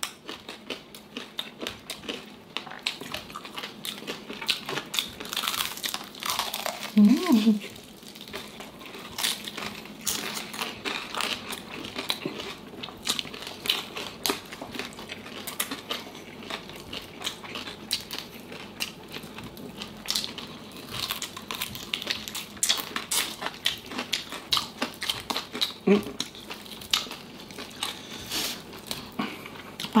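Crispy deep-fried pork knuckle skin being bitten, chewed and pulled apart, with a constant run of sharp crackles and crunches close to the microphone.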